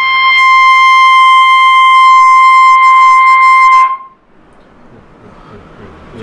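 Trumpet holding one high note steadily for about four seconds, then cutting off.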